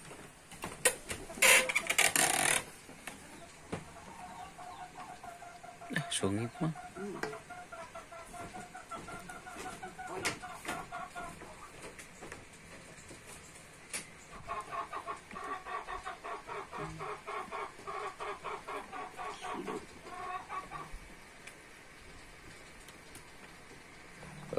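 A hen clucking in long runs of quick, evenly spaced pitched pulses, with a short loud clatter about two seconds in.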